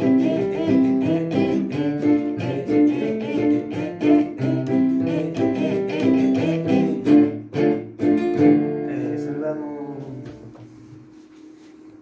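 Electronic keyboard playing a melody over repeated chords, notes struck in a steady rhythm. About eight seconds in, the playing stops and the last chord rings out and fades away.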